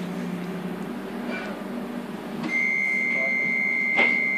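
Docklands Light Railway train's running hum as it draws into a station. About two and a half seconds in, a single steady high electronic tone starts and holds, part of the train's stopping sequence.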